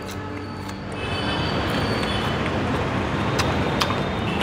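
Steady noise of a passing vehicle on a nearby road, growing louder about a second in, with a faint high whine. A couple of sharp light clicks come near the end.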